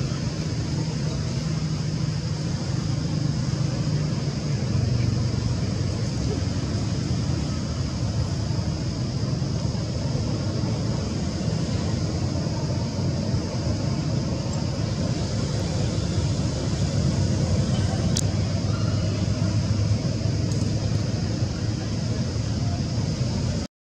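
Steady outdoor background noise: a continuous low rumble with a steady high hiss over it.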